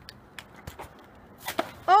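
A broken scooter piece splashing into shallow canal water, one sudden splash about a second and a half in, after a few faint clicks.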